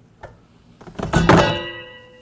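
An old evaporator fan assembly, PSC motor with its metal fan blade, dropped into a plastic recycling bin: a thunk and clatter about a second in, followed by metallic ringing that dies away.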